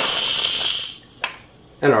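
Instant Pot Duo Plus venting steam through its release valve on a quick release after pressure cooking: a loud hiss that starts abruptly, holds for about a second and fades out, followed by a single click.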